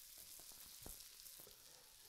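Faint sizzling of crab cakes shallow-frying in vegetable oil in a skillet, with a few soft crackles, fading out near the end.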